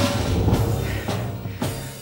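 Live studio band playing dramatic, suspense-building music: deep drum hits about twice a second over a sustained low bass.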